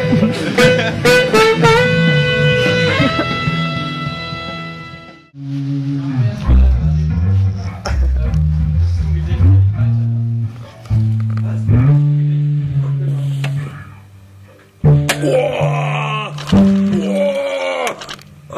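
Rock band jamming: a saxophone holds long notes over guitar and sharp percussive hits. The music cuts off abruptly about five seconds in and a different passage of bass and plucked guitar notes begins, with another sudden change near the end, as in edited clips of one session.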